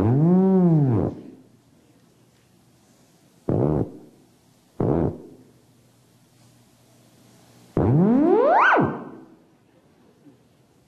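A theremin is played by hand movements near its pitch antenna. First a note swoops up and back down. Then come two short notes, and near the end a long glide rises to a high pitch and cuts off.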